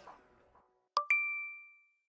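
The outro music dies away, then two bright chime dings a tenth of a second apart sound about a second in, ringing clearly and fading out before the end.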